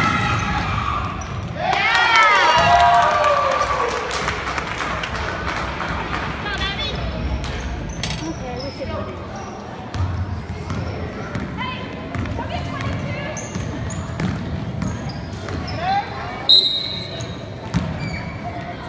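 Basketball gym during a youth game: a ball bouncing on the hardwood floor and sneakers squeaking, with spectators' and coaches' voices shouting loudly about two seconds in. A short, high, steady whistle blast sounds near the end, typical of a referee stopping play.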